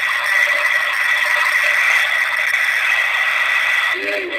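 Loud, steady hiss with a thin high whine running through it: the noise of the conversation recording in a pause between words.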